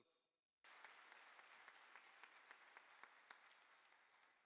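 Faint applause from a large audience of delegates. It starts abruptly about half a second in and slowly tapers off toward the end.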